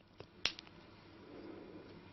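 A few light clicks, one of them sharp, as the wooden dowel stick with its nylon tail gut is picked up and handled, followed by a soft rustle.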